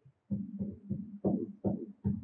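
Hand rammer pounding moulding sand in a wooden moulding box: a quick, uneven run of dull thuds, about four a second, starting a moment in, as the sand is packed down.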